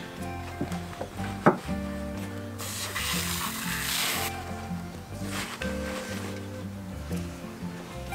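Background music with a steady beat throughout. About two and a half seconds in, an aerosol can of battery cleaner hisses in a spray lasting a second and a half, soaking a corroded battery terminal. A single sharp click comes about a second and a half in.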